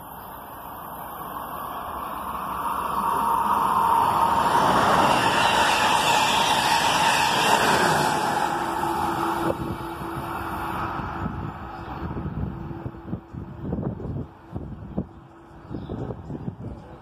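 Amtrak Keystone passenger train running through the station at speed behind a trailing ACS-64 electric locomotive. A rush of wheels on rail and air swells to a peak, and the locomotive's pitch drops as it goes by about eight seconds in. The sound then fades, with a few knocks near the end.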